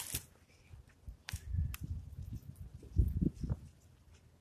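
A couple of clicks of the phone being handled close to the microphone, then irregular low thuds of footsteps walking away over the ground, the heaviest about three seconds in.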